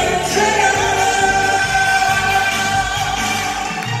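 A singer singing live into a handheld microphone over musical accompaniment with a steady bass beat, amplified through the stage speakers.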